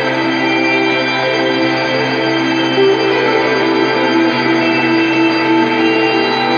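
Live band playing a slow, ambient instrumental passage: layered held tones that sound steadily, with no singing.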